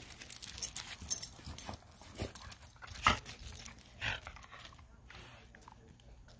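Two dogs playing on gravel: panting and paws scuffing the stones, with a few short, sharper sounds about a second apart.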